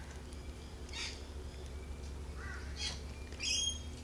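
Laughing kookaburra giving a few short, soft squawking calls, the longest near the end, as it waits to be hand-fed.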